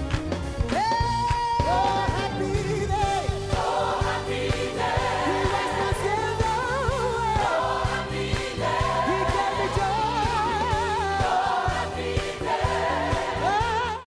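Large gospel choir singing with a live band of electric guitar and drums, long held and wavering sung notes over a steady beat.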